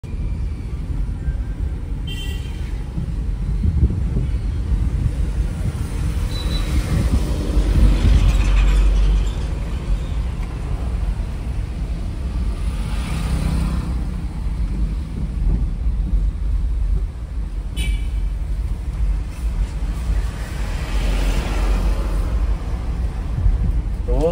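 Interior sound of a Maruti Suzuki A-Star small hatchback driving in town traffic: a steady low engine and road rumble that swells several times as other traffic passes. There are two brief high-pitched sounds, one about two seconds in and one near the end.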